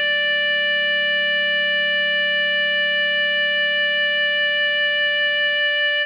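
Clarinet tone from score playback, one long sustained note held through the tied final bars. It plays over a low held backing note that fades out near the end.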